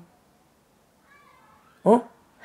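A pause in conversation: quiet room tone, a faint brief high-pitched wavering tone about a second in, then a short voiced sound from a person just before the end.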